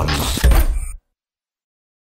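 The tail of a radio station jingle: a sound effect with a heavy low hit about half a second in, which cuts off abruptly to digital silence about a second in.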